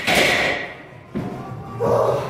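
A barbell loaded with 170 kg is set down into the steel hooks of a power rack after the last squat rep. It lands as a sudden heavy thud about a second in.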